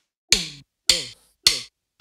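Electronic percussion count-in: three sharp drum hits about 0.6 s apart, each with a short tail that drops in pitch, counting off the cumbia song just before the band comes in.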